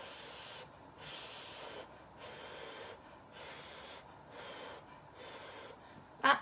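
Soft, faint puffs of breath, about one a second, blown on a hot spoonful of noodle soup held at the lips to cool it.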